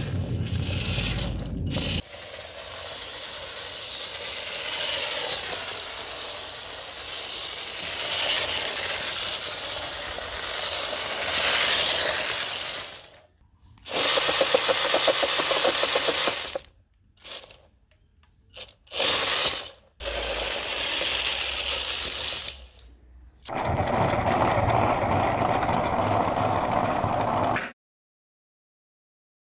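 A string of short, abruptly cut clips of small-machinery noise, with brief silent gaps between some of them.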